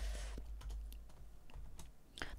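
A handful of faint, separate computer keyboard keystrokes, typing a formula and pressing the Shift+F2 shortcut, over a low hum.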